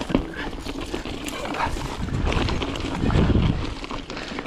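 Mountain bike tyres rolling over loose rocks on singletrack: a continuous crunching rattle of stones clicking and knocking under the wheels, with low rumbles of wind on the microphone, heaviest about three seconds in.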